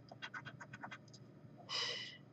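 A coin scraping the latex coating off a paper lottery scratch-off ticket in a quick run of about ten short, light strokes, followed by a brief louder hiss near the end.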